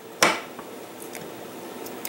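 A sharp click about a quarter second in, then a few faint ticks, as a hand screwdriver drives a screw through a small metal wall hanger into an MDF plaque.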